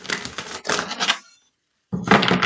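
A tarot deck being shuffled by hand, cards flicking and slapping against each other in a rapid clicking flutter. One burst lasts about a second and a half, and a second begins near the end.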